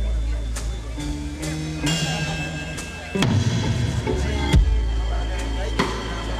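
Live blues band playing: electric guitar and bass over a drum kit, with sharp drum hits cutting through a sustained bass line.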